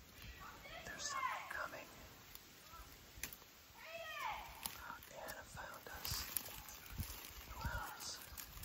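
Children whispering in hushed voices, with a few soft, brief spoken bits about one and four seconds in, over faint rustling and handling of the phone.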